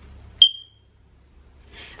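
A single short, high-pitched electronic beep, with a sharp onset and a quick fade, a little under half a second in.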